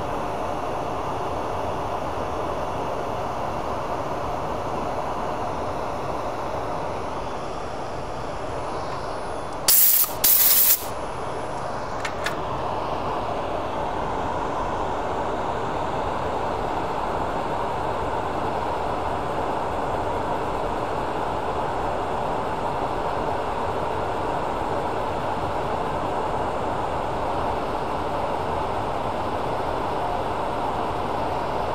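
A lathe running steadily while an aluminum honeycomb and resin pen blank is hand-sanded with 240-grit sandpaper. About ten seconds in there are two short, loud hissing bursts, then a faint click.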